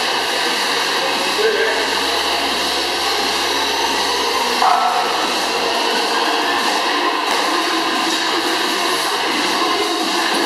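Air rowing machine's fan flywheel whirring steadily as she rows, over background speech and music.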